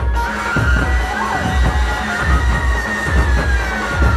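Dhumal band playing: many drum strokes over a heavy amplified bass beat, with one long high melody note held and sliding down near the end.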